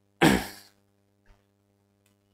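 A man clearing his throat once: a short, loud burst that dies away within about half a second, followed by a faint click about a second later.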